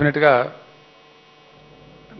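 A man says a word into a handheld microphone in the first half second, then falls silent, leaving a faint steady electrical hum from the sound system.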